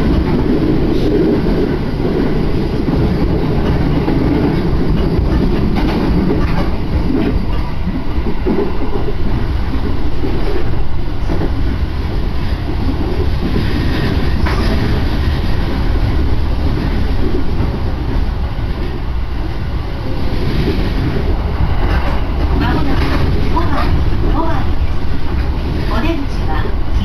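Inside a moving electric commuter train: a steady rumble of wheels on rail and the running gear, strongest in the low end, going on without a break.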